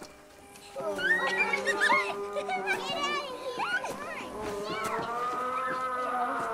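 Children's voices chattering and calling, most busily in the first half, over steady held background tones.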